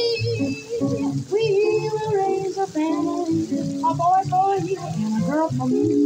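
Live jazz trio: a woman singing a melody into a microphone, accompanied by a hollow-body archtop electric guitar and a plucked upright double bass.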